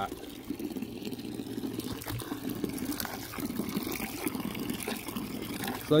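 Water from a garden hose pouring steadily at full flow into a swimming pool: the return stream from rooftop solar heating panels.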